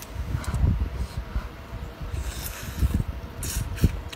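Cooked hairy crab being cracked and pulled apart by hand: several short crunching crackles of shell and a sharp snap near the end, over irregular low rumbling bumps.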